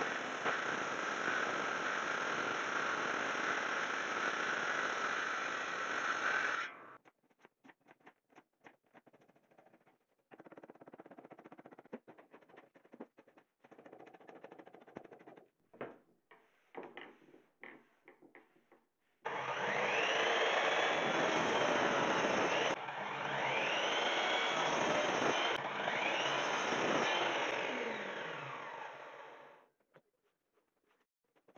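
A table saw ripping a wooden board, a steady loud cut lasting about seven seconds. Then irregular scraping and clicking as bark is pried and scraped off the board with a hand blade. Then a miter saw making three cuts in quick succession, its motor whine rising and falling with each one.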